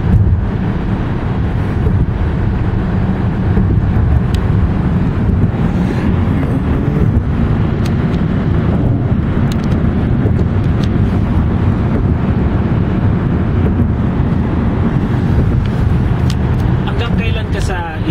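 Steady low road noise of tyres and engine inside a car cabin, driving at highway speed.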